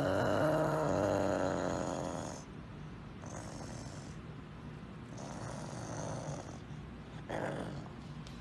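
A serval growling low and rasping while it holds a piece of raw chicken in its mouth. This is a food-guarding growl. One long growl fades after about two and a half seconds, then two softer growls follow.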